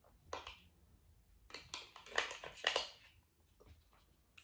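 Plastic clicks and rustles of a small vlogging rig being handled and its parts fitted together: a couple of clicks about half a second in, then a quick run of clicks and rattles in the middle.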